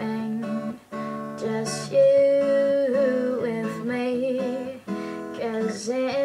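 Strummed acoustic guitar accompanying a woman's singing voice, which holds one long note about a third of the way in.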